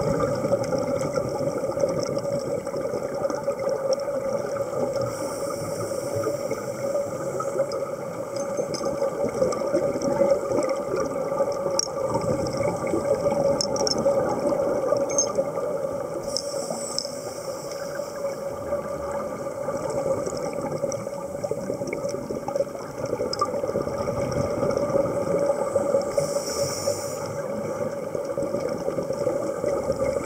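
Underwater ambience of a scuba dive: a steady drone with a constant hum, broken about three times by a few seconds of hissing, bubbling exhalation from divers' regulators.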